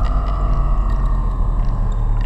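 Eurorack modular synthesizer playing ambient music whose notes come from a houseplant's biodata through an Instruo Scion module: a deep steady bass drone under a high tone that slowly slides downward, with faint soft ticks above.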